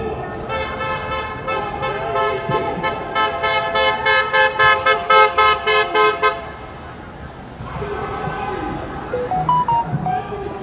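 A horn honking: a held blast, then a run of short, rapid honks about three a second that stops abruptly about six seconds in, over the voices of a marching crowd.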